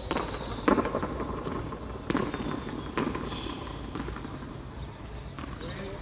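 Hard pelota ball being struck by hand and smacking off the front wall and floor of a frontón, a few sharp cracks with a short echo after each, the loudest about a second in and others around two and three seconds in.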